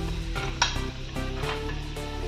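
Diced potatoes and carrots sizzling in hot oil in a kadai, with a spatula stirring against the pan and one sharp clink about half a second in. Background music runs underneath.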